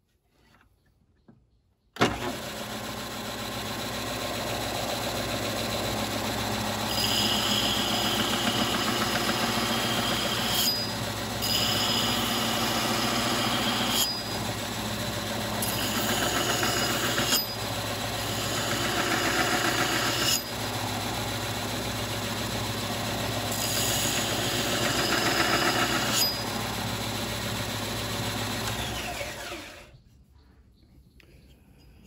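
A Delta bench belt sander switches on about two seconds in and runs steadily. A steel axe head is pressed against the 120-grit belt in about five passes of a few seconds each, every pass adding a higher grinding hiss as the edge is sharpened. The motor switches off near the end and winds down.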